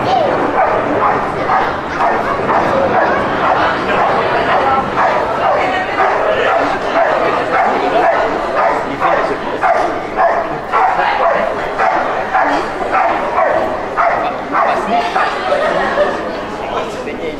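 Belgian Malinois barking continuously at a protection helper in the blind, a steady run of sharp barks about two to three a second: the hold-and-bark of a protection routine.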